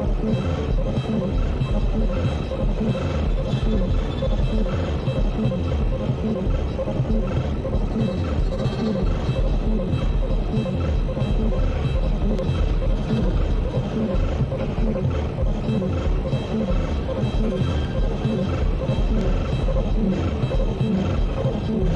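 Dense, steady electronic noise music from a live modular synthesizer and electronics set, with heavy low rumble and a few held tones above it.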